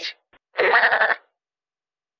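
A goat bleating: one call of under a second.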